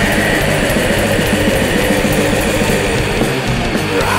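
War black metal recording: loud, dense distorted electric guitars over fast, relentless drumming.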